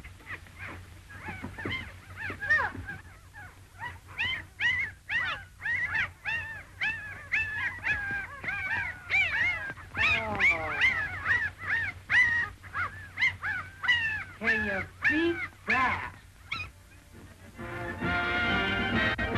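A litter of puppies whimpering and squealing: many short, high cries that rise and fall, overlapping one another and thinning out near the end.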